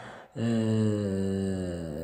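A man's voice holding one long hesitation vowel, like a drawn-out "ehhh", for about a second and a half after a brief pause, sliding slowly down in pitch.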